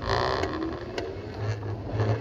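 An electric bike rolling slowly on pavement under throttle: a gust of wind noise on the microphone right at the start, then a steady low rumble.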